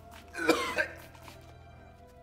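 A man gagging and coughing in one loud, harsh burst about half a second in, choking on a foul stench, over soft background music.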